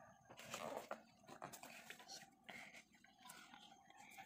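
Near silence: faint room tone with a few soft rustles and clicks, the strongest in the first second.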